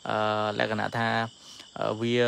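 A man talking, with a short pause in the second half, over a steady high chirring of crickets.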